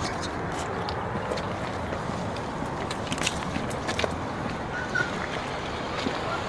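A car door being handled and opened: scattered light clicks and taps over a steady noisy background.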